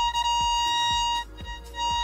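Robotic-mower wire tester sounding a steady, buzzy electronic tone as it picks up the signal on the repaired control wire; the tone cuts off a little past halfway.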